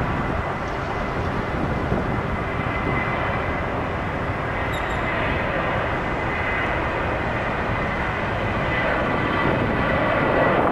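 Southwest Airlines Boeing 737's CFM56 turbofan engines at takeoff thrust during the takeoff roll: a steady rushing roar with a thin high whine, growing a little louder near the end as the jet rotates.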